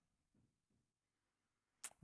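Near silence: quiet church room tone, with one brief sharp hiss near the end.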